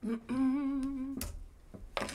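A person humming one held note for about a second, with a slight waver in pitch, followed by a sharp click near the end.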